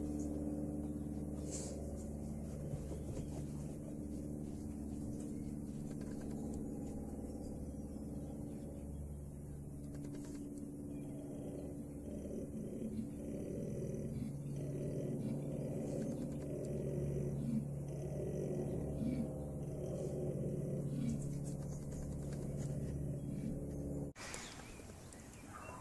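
Male koala bellowing: a long, low, continuous call that turns into a pulsing run of grunts in its second half.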